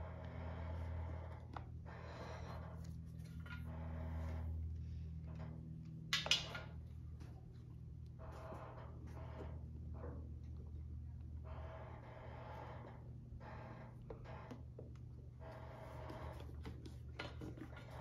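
Faint rustling and handling sounds as wires are pushed and picked through a rubber grommet in a motorcycle's plastic rear fender, with a sharp click about six seconds in, over a steady low hum.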